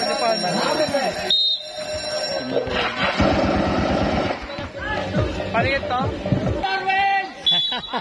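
Spectators' voices and chatter around a basketball court, louder in the middle, with two short, high referee whistle blasts, about a second in and near the end.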